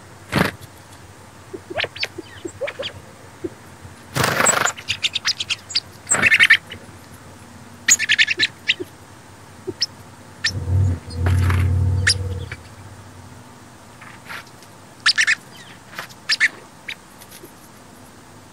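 Sparrows giving short, sharp chip calls scattered throughout. There is a brief rushing noise about four seconds in and a low rumble lasting about two seconds near the middle.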